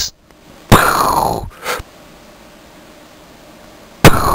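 Two sound-effect bursts standing in for gunshots. A loud one about 0.7 s in has a falling pitch, and a short one follows about a second later, over a faint steady hiss.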